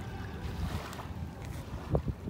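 Wind buffeting the microphone over small waves lapping on a sandy shore, with a short low thump near the end.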